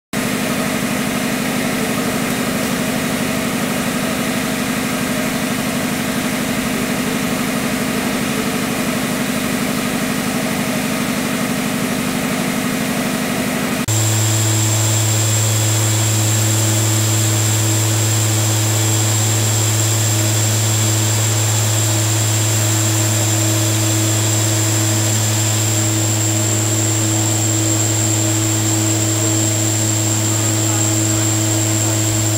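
3 MW condensing steam turbine running steadily with no load on a test bed. About halfway through, the sound changes abruptly to a deeper hum with a thin high whine on top.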